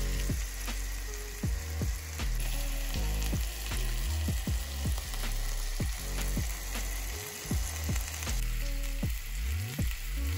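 Flour-coated chicken breasts sizzling steadily as they fry in oil in a frying pan, with occasional clicks and scrapes of a metal spatula turning them.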